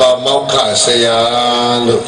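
A Buddhist monk's amplified male voice intoning a Pali chant, ending on one long held note.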